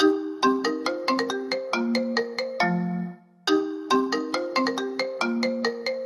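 An iOS 7 iPhone ringtone melody played as a sample: a phrase of short, bell-like plucked notes, heard twice with a brief break between the two passes.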